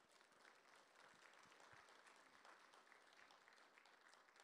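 Faint applause from a congregation, the dense clatter of many hands clapping at once.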